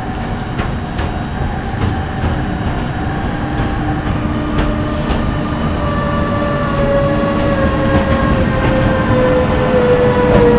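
MÁV class 480 (Bombardier TRAXX) electric locomotive pulling a passenger train slowly into a platform: a whine of several steady tones that slowly falls in pitch as the train slows, with a few sharp clicks from the wheels on the rails, growing gradually louder as it comes closer.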